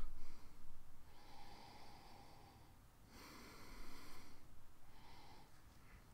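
A man's slow breaths through the nose, sniffing the aroma of a stout from the glass: two soft, drawn-out breaths, the first about a second in and the second about three seconds in.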